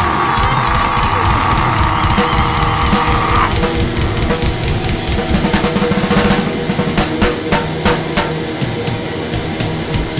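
Black metal band playing: a held note rings over the drums until about three and a half seconds in, then the drum kit plays a fill of rapid snare and bass-drum hits under the distorted band.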